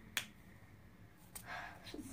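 A single sharp click about a fifth of a second in, then a fainter click a little over a second later, followed by a soft breathy sound.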